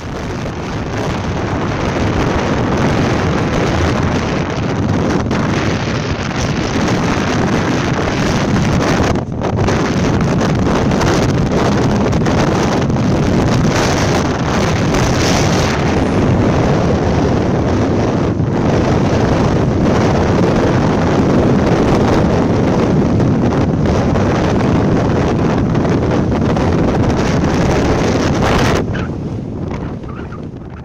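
Strong wind buffeting the camera microphone: a loud, steady rushing roar with a couple of brief dips, fading out near the end.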